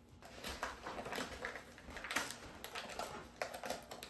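A paperboard Popin' Cookin' candy-kit box being torn open by hand: an irregular run of crackling tears and rustles.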